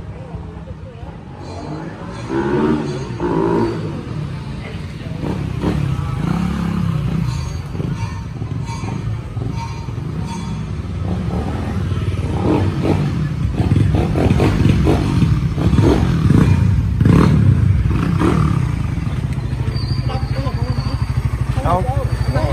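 Suzuki Satria 150i single-cylinder engine, running on a tuned Aracer RC Mini 5 ECU, as the bike is ridden on the street. It grows louder through the middle and settles into an even idle near the end.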